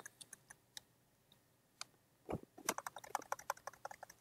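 Computer keyboard keystrokes: a few scattered key clicks, then a quicker run of keypresses in the second half.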